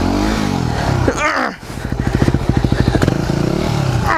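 Yamaha WR250R's single-cylinder four-stroke engine revving up and easing off over the first second as the bike works through a rocky rut. From about two seconds in it chugs at low revs with evenly spaced firing pulses.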